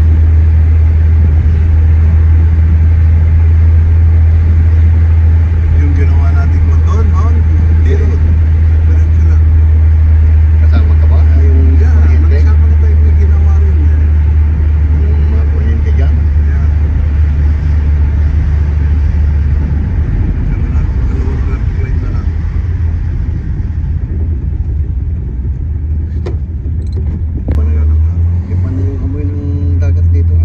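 A car's engine and tyres give a steady low rumble inside the cabin at highway speed. It eases off in the second half as the car slows, and faint voices talk at times.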